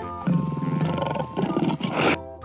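A tiger roaring, a loud rough roar that starts about a quarter second in and surges again near the end. Light children's background music plays underneath.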